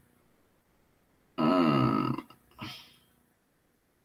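A man's short wordless vocal sound, falling in pitch, about a second and a half in, followed by a brief fainter one; the rest is silent.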